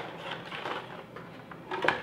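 Cardboard packaging being handled as a small white box is lifted out of the speaker's retail box: soft scraping and rustling with a couple of sharper taps near the end.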